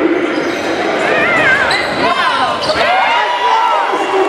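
Live basketball game sound on a gym's hardwood court: a ball bouncing, and sneakers squeaking in a flurry of short squeals in the middle, with players' voices around them in the hall.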